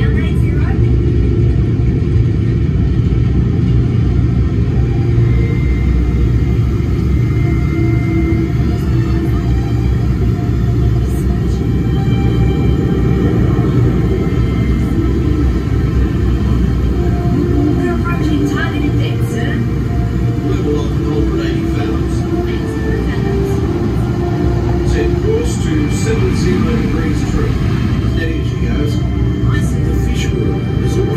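Steady low rumble inside a theme-park ride submarine's cabin as it cruises, with faint soundtrack music and indistinct voices over it.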